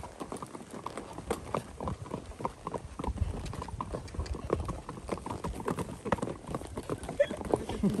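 Hooves of walking horses striking a packed dirt trail in a steady, uneven stream of hoofbeats. A man's voice comes in near the end.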